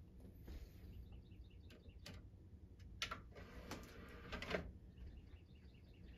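Faint bird chirps in the background over quiet room tone, with a soft rustle and click about three seconds in.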